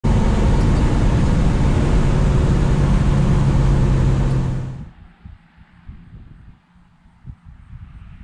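Chevrolet C10 pickup engine heard from inside the cab at a steady cruise, its steady drone mixed with road and wind noise. The sound fades out about five seconds in, leaving only faint low rumbles and thumps.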